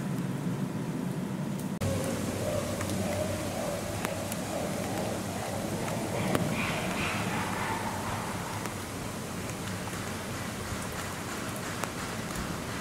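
Steady outdoor hiss like light rain. A faint, brief chimpanzee call comes about six seconds in.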